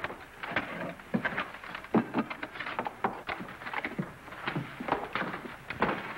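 Irregular knocks and thumps of footsteps and a wooden love seat being bumped about as two men carry it across a porch and in through a door.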